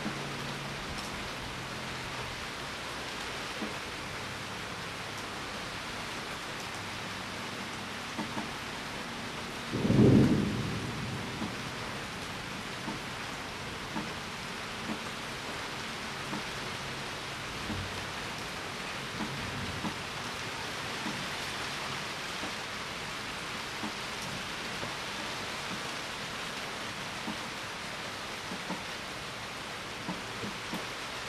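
Steady hiss of room noise with faint, scattered keyboard clicks as a terminal command is typed, and a single dull low thump about ten seconds in.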